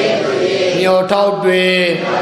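Male voice chanting in long held notes, with a fresh note taken up just under a second in.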